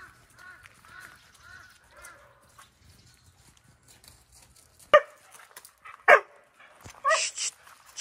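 A dog barking: two sharp barks about a second apart past the middle, then a shriller yelp near the end. Before that, a run of faint, short whining calls, about two a second.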